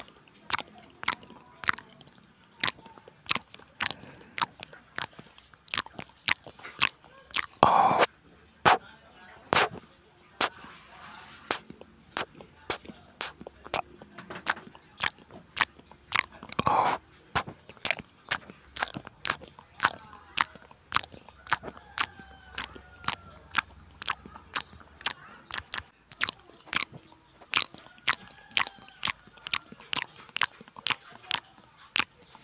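Close-miked chewing of chicken in chili sambal with rice: wet mouth clicks at about two a second throughout. Two longer, louder crunches break in about eight seconds in and again near seventeen seconds; the second comes as he bites into raw cucumber.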